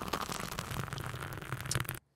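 Crackling, hissing noise of a segment-transition sound effect, cutting off suddenly at the end.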